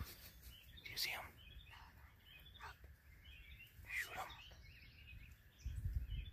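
Faint bird calls: a few short chirps and sweeping notes about a second, two and a half, and four seconds in, over a low rumble.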